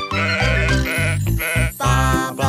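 A cartoon sheep bleating 'baa' three times in quick succession, over a children's song backing track with a steady bass beat.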